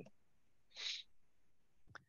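Quiet room tone over a call microphone, with one short breath-like sound a little under a second in.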